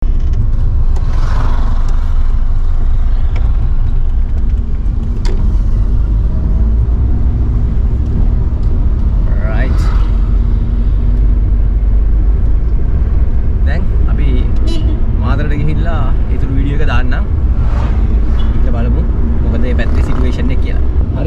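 Steady low rumble of a car being driven, heard from inside the cabin, with voices talking briefly about ten seconds in and again in the second half.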